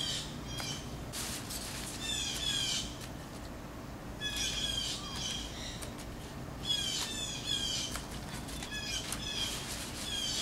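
Songbirds chirping in repeated bursts of quick, high, falling notes, each burst about a second long, with a few faint clicks of pruning scissors snipping sweet potato stems.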